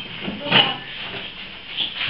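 Indistinct voices talking in the background of a room, with a brief louder sound about half a second in.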